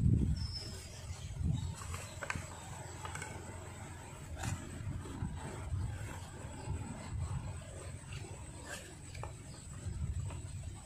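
Uneven low rumbling, with a few faint clicks and taps of a thin stick working inside the open end of a bamboo tube.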